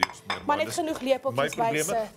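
A metal kitchen knife clinking against a ceramic bowl, one sharp clink right at the start, with lighter clatter of cutlery and dishes after it.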